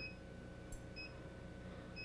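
Faint, sharp clicks of water cracking as it freezes solid in an evacuated glass flask, twice, under a short high electronic beep that repeats about once a second and a steady faint hum.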